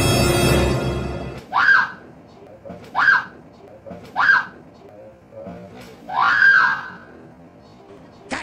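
Tense background music fading out in the first second and a half, then a woman screaming four times in short, high shrieks, the last one longer.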